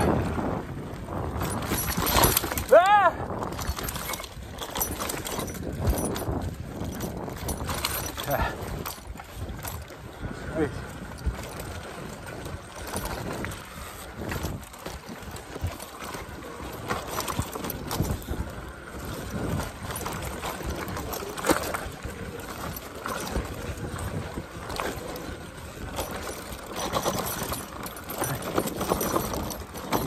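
An electric mountain bike ridden fast over a bumpy dirt trail: uneven rattling and knocking of the bike over the ground, with tyre and wind noise. A short pitched sound dips and rises about three seconds in.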